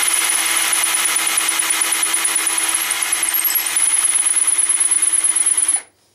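Electric drill spinning a long, thin twist bit through the knuckles of a wooden hinge, running at one steady speed with a high whine, then stopping abruptly near the end.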